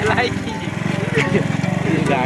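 Small vehicle engine running steadily with a fast, even pulsing beat, with voices over it.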